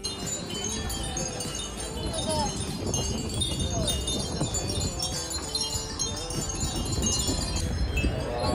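Many Japanese glass wind chimes (furin) tinkling together, a continuous scatter of small, high, overlapping rings.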